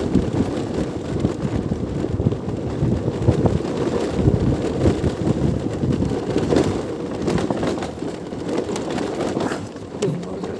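Wind buffeting the microphone of a moving camera: a dense, fluctuating low rumble that eases a little near the end.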